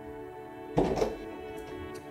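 Background music with steady sustained tones, and one sharp thunk about a second in.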